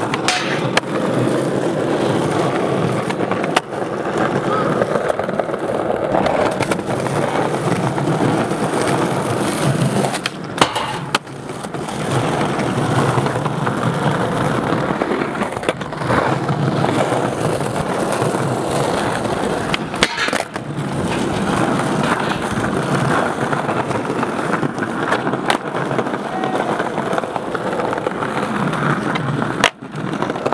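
Skateboard wheels rolling steadily over a marble-tiled plaza, with sharp clacks of the board from tricks and landings every few seconds.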